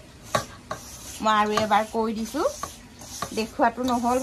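A hand rubs and squeezes a crumbly dough mixture in a steel bowl, giving a gritty rubbing with a few light clicks against the metal. A woman's voice speaks briefly twice, about a second in and again near the end.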